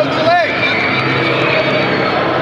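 Crowd noise in a busy tournament hall: many voices of spectators and coaches talking and calling out at once, with one short shout standing out near the start.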